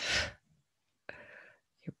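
A woman's voice trailing off at the end of a word, a short pause with a soft breath, then her speech resuming.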